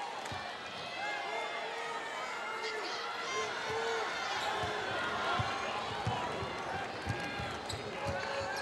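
A basketball dribbled on a hardwood court, the bounces coming in a regular run in the second half, over the steady chatter and calls of an arena crowd.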